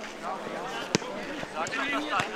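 A football kicked once, a single sharp thud about a second in, among players' shouts on the pitch.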